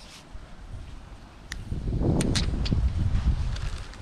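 Low wind rumble on the microphone, building about halfway through and loudest in the second half. A few small, sharp clicks come around the middle as the GoPro Hero 9 camera is handled.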